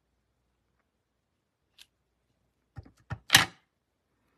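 Clear acrylic stamp block tapping and pressing down onto cardstock on a stamping mat: a faint tick about two seconds in, a few small taps, then one louder knock near the end.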